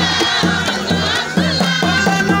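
Crowd of women singing and ululating over a steady drum beat, about two to three beats a second.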